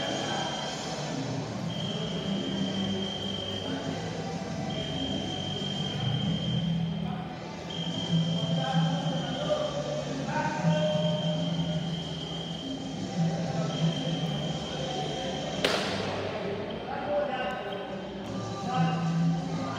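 Electronic beep from a fencing scoring machine, a steady high tone held about two seconds and repeating about every three seconds. A single sharp metallic crack sounds near the end.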